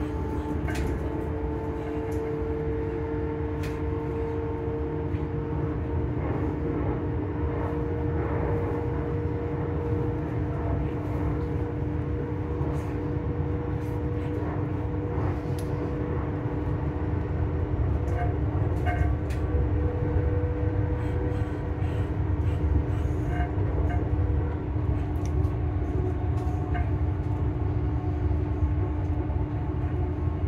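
Passenger train running between stations, heard from inside the door vestibule: a steady low rumble of wheels on track with a constant hum from the train's running gear and scattered small clicks and rattles, growing a little louder about two-thirds of the way through.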